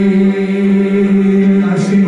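A small group of worship singers on microphones holding one long sung note together, with a new word beginning near the end.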